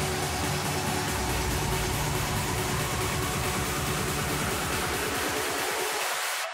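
Electronic dance music building up, its beat quickening toward the end.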